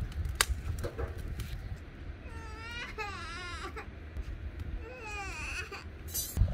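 A toddler crying: two long, high, wavering wails, the first about two seconds in and the second near the end. A sharp click comes shortly after the start.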